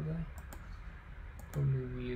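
Two pairs of quick, sharp computer mouse clicks, the first about half a second in and the second about a second and a half in.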